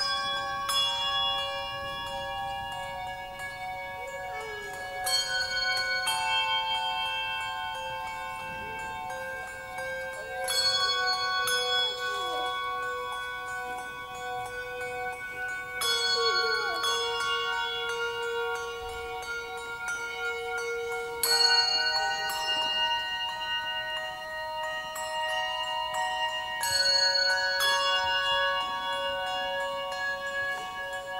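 A handbell choir playing slow, sustained chords. A new chord is struck about every five seconds and rings on, overlapping the next.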